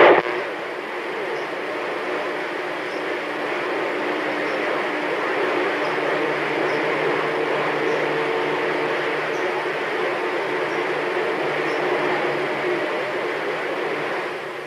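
CB radio speaker putting out steady static hiss on an empty channel between transmissions, with faint steady tones in the noise from about six seconds in until near the end.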